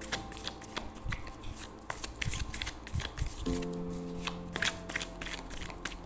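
A deck of tarot cards being shuffled by hand, a quick, irregular run of light card clicks, with soft background music underneath.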